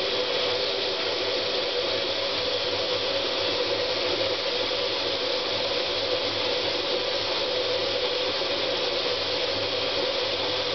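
Water tap running steadily into a bathroom sink, a constant rushing.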